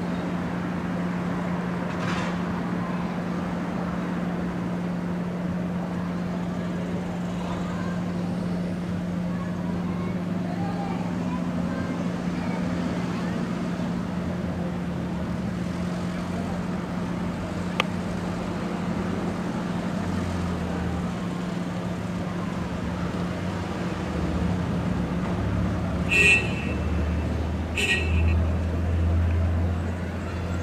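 Road traffic queuing and creeping past: a steady low hum under engine rumble that grows louder in the last ten seconds, with two short car-horn toots about a second and a half apart near the end.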